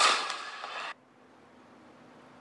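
Sound track of a played-back outdoor street video: a sharp bang, then noisy outdoor sound. The sound cuts off suddenly about a second in as the playback is paused, leaving only a faint steady hum.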